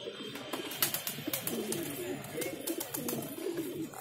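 Several domestic pigeons cooing together in overlapping low, wavering coos.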